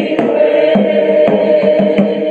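A choir singing with accompaniment, with sharp percussive hits sounding over it at irregular intervals.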